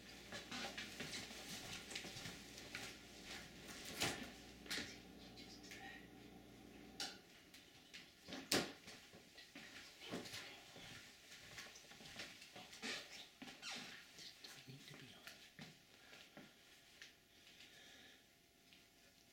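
Gray squirrel chewing dried corn kernels: faint, irregular crunching and clicking, with a few sharper cracks.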